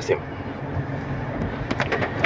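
Steady road and engine noise inside the cabin of a car being driven, a low even hum in the pause between speech.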